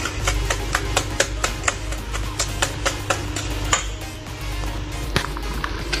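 Wire whisk beating eggs into a liquid batter in a stainless steel bowl: quick, even clicking of the wires against the metal, several strokes a second.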